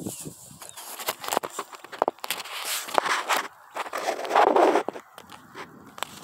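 Irregular rustling and crackling from the phone being handled and set in place, with footsteps on dry grass; the loudest is a longer rustle about four seconds in.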